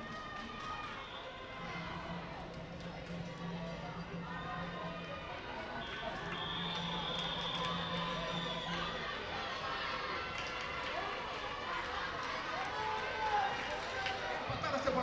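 Background music with sustained notes, over voices of players and onlookers at a flag football game.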